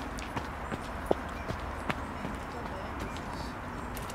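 Steady outdoor background hiss with scattered sharp clicks and taps, irregularly spaced, the loudest a single knock about a second in.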